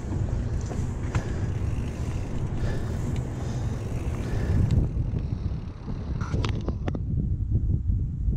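Wind rumbling over the microphone of a camera on a moving mountain bike, with tyre and ride noise. About five seconds in this gives way to a quieter low wind rumble, broken by a few sharp clicks.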